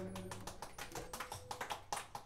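A few people clapping: a quick, irregular patter of sharp hand claps.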